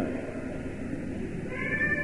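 A pause in a man's speech, filled with the steady hiss and low hum of an old tape recording. Near the end a faint, high, held tone comes in just before the voice resumes.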